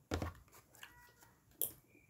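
Tarot cards handled on a tabletop: a few brief soft taps and rustles as a card is set down, with a sharper tick near the end.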